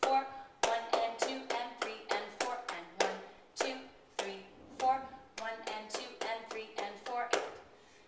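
Hand claps keeping a steady beat. One clap per beat (quarter notes) gives way to two claps per beat (eighth notes), and the switch from single to doubled claps comes twice.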